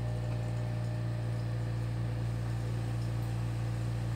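Portable air conditioner running: a steady low hum with a few faint steady tones above it.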